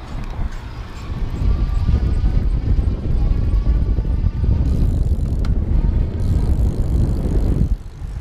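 Wind rushing on the microphone and tyre rumble as an electric bike is ridden, with a faint steady whine from its 350-watt rear hub motor under pedal assist. The motor itself is quiet.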